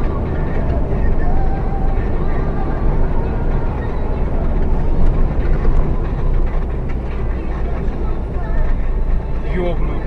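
Steady low engine and road rumble heard inside a moving vehicle's cabin while driving on a snowy road, with faint voices in the cabin.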